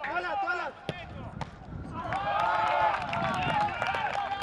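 Several men shouting over one another during open play on a football pitch, the calls growing louder and denser from about halfway in. A sharp thud of a football being kicked comes about a second in.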